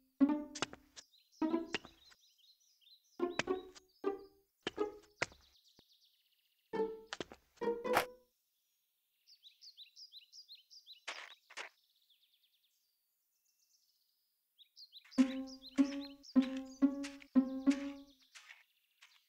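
Cartoon sound effects of a character climbing down a playground slide's ladder: short, pitched knocks, one per step. The knocks come in an uneven run over the first half, stop for a few seconds while birds chirp, then return as a quicker even run of about eight near the end.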